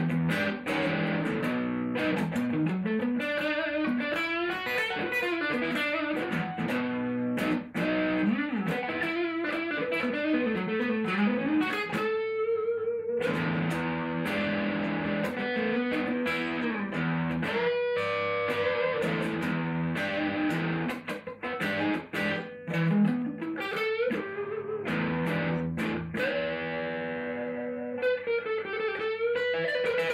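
Electric guitar, a Gibson SG Special, played through a Marshall JCM900 tube combo amp with a Sovtek 12AX7 preamp tube in the V1 position. Lead lines of picked notes and string bends, with a few long held notes wavering in vibrato about halfway through.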